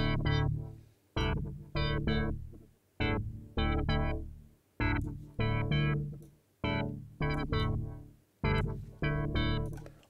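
Serum software synth playing a UK garage chord preset of detuned, many-voiced unison chords: short chord stabs in a repeating syncopated pattern of about three every two seconds, each dying away quickly. A note-on random source modulates oscillator B's wavetable position, so each stab's timbre comes out a little different.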